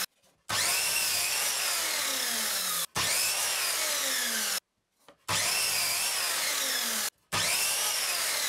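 Electric miter saw running and cutting across hardwood boards, in several short stretches that break off abruptly.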